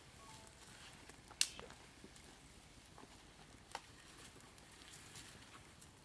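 Mostly quiet, with faint ticks and two sharp snaps about a second and a half and nearly four seconds in, from small twigs and kindling being broken and fed to small smoky campfires.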